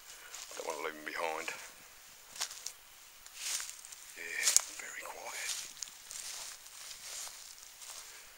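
Footsteps crunching irregularly through pine forest litter, with a sharp crack about four and a half seconds in, the loudest sound. A voice is heard briefly near the start and again around the middle.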